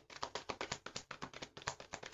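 A tarot deck being shuffled by hand: a fast run of card taps and slaps, about ten a second.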